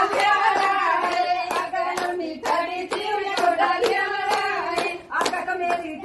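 A group of women singing a song together while clapping their hands in time, about two claps a second, with a brief dip in the singing shortly before the end.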